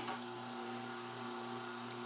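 Slow masticating juicer's electric motor running with a steady low hum while apple pieces are fed into its chute.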